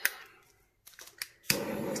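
A handheld gas torch clicking a few times, then lighting about one and a half seconds in and burning with a steady hiss, played over freshly poured resin to pop surface bubbles.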